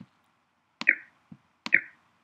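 A computer mouse clicking a few times: short, sharp clicks, the two loudest about a second in and near the end, each with a brief ringing tail.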